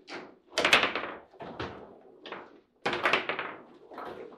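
Foosball table in play: sharp wooden and plastic knocks of the ball and rod men striking and the rods banging against the table, in two loud clusters about a second in and near three seconds, with lighter knocks between.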